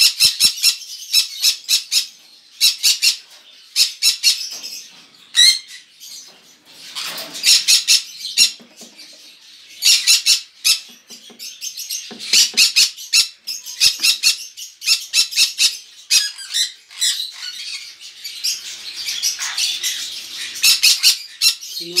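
Green-cheeked conures squawking: loud, harsh, high-pitched calls given in quick rapid-fire bursts, one volley after another with short pauses between.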